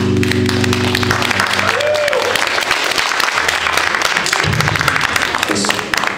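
A rock band's final electric-guitar and keyboard chord rings on and fades out in the first second or so. Audience applause takes over, dense and loud, with a brief shout about two seconds in.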